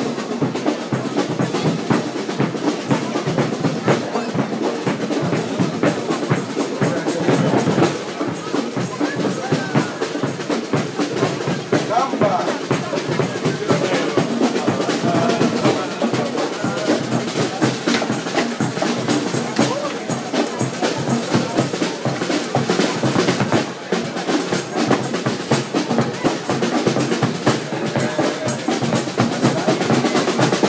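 Marching band drums playing without pause: snare drum rolls and rapid snare strokes over bass drum beats, with crowd chatter underneath.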